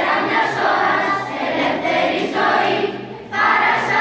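Children's choir singing, with a short break between phrases about three seconds in.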